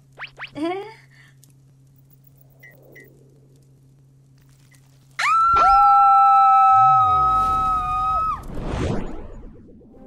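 Two cartoon voices screaming together in one long held scream of about three seconds, one higher-pitched and one lower, starting about five seconds in. A short laugh comes at the very start.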